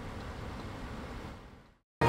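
Steady hiss and rumble with no tone or rhythm. It fades out about a second and a half in and ends in a moment of silence.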